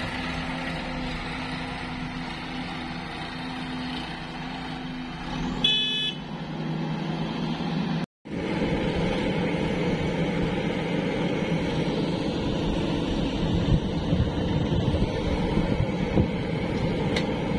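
Diesel tractor engine running steadily, with a short horn toot about six seconds in. After a brief cut near halfway, a JCB 3DX backhoe loader's diesel engine works under load while digging, rougher and with uneven surges.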